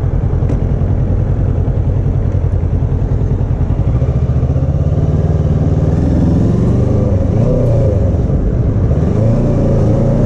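Kawasaki Ninja 650's parallel-twin engine running as the motorcycle rides at low speed, its note growing stronger about halfway through and then rising and falling a few times near the end as the throttle is opened and eased.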